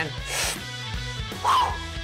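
Background music with a steady low line, over an athlete's breathy exhale about half a second in and a short grunt about a second and a half in, straining through a back squat.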